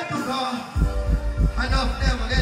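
Dancehall music through a concert sound system: a heavy bass line of deep, fast thumps drops in just under a second in, with the deejay's voice over it from halfway through.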